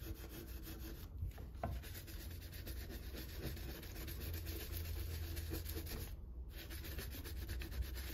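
Green scouring pad scrubbing a glass-ceramic cooktop through a layer of cream cleaner: steady back-and-forth rubbing that breaks off briefly twice.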